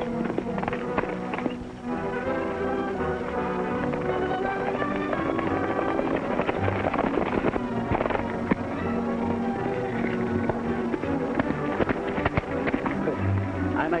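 Orchestral film score playing, with the clatter of galloping horses' hooves under it.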